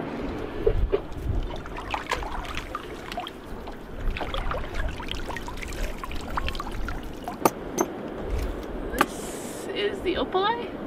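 Seawater splashing and dripping as a mesh catch bag of fish is lifted out of the sea, with scattered knocks and clicks of handling on a boat deck.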